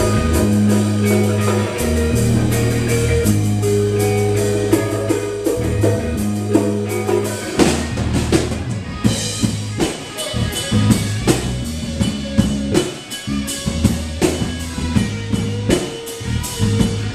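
Live rock band playing an instrumental passage on drum kit and guitars, with no singing. About halfway through, the held low notes break off and the drums take over with sharp, choppy hits.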